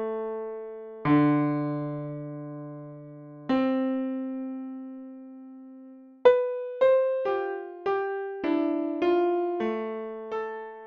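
Dead Duck Software DPiano-A digital piano plug-in being played. Two chords ring out and fade slowly in the first half, then from just past the middle come single notes at about two a second.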